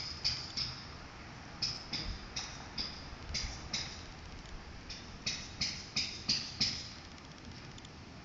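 Short, high chirps from a small animal, about three a second, in runs of a few with brief pauses between, stopping near the end.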